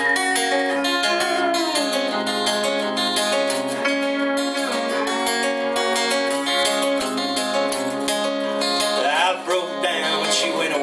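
Acoustic guitar strumming a steady rhythm while a steel guitar plays sustained lines with sliding, bending notes: the instrumental intro to a folk song.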